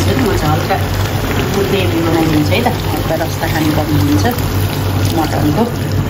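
Water poured from a steel cup into a curry simmering in a kadai, under a steady low hum and a voice.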